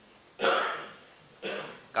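A person clearing their throat once, sudden and rough, about half a second in, fading out over half a second, followed by a shorter, weaker throat sound about a second later.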